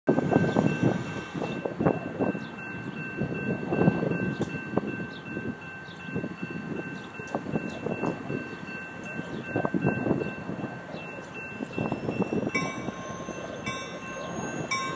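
Railroad grade-crossing warning bell ringing steadily as a train approaches, over irregular low rumbling noise and small bird chirps.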